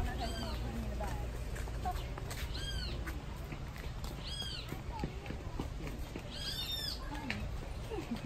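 An animal calls four times, about every two seconds. Each call is a short note that rises and then falls in pitch, with overtones.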